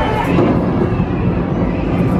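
Simulated thunderstorm effect in a jungle-themed restaurant: a loud, low rumble of thunder from the sound system, over the chatter of a crowded dining room.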